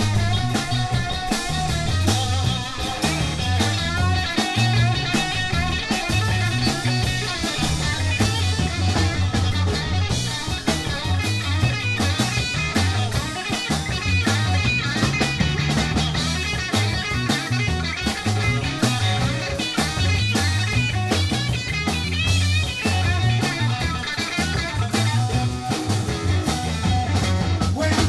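Live blues-rock band playing an instrumental passage: electric guitar leading over electric bass and a steady drum beat.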